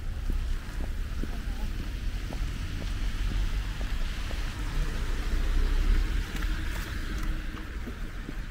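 Street traffic: cars driving on a wet, slushy road, their tyres hissing, swelling as one passes about six to seven seconds in, over a steady low rumble. Footsteps tap on the pavement.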